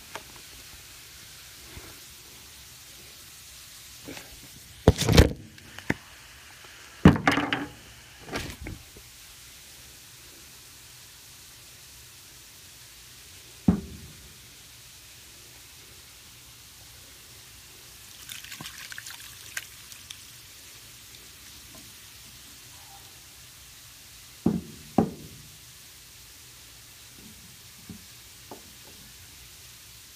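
A jar of pepper rings being opened and emptied into a cooking pot: scattered sharp knocks and clunks of jar and lid against the pot, and a brief pour of brine and peppers about two-thirds of the way through.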